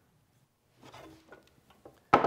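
Near silence: room tone, with a few faint soft handling sounds about a second in and near the end.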